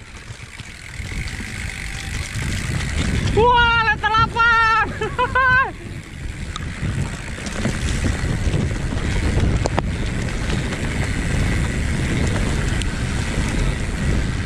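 Wind buffeting an action camera's microphone and a mountain bike rolling over a dirt trail, a steady low rumble. About three and a half seconds in, a voice calls out for about two seconds with a wavering pitch.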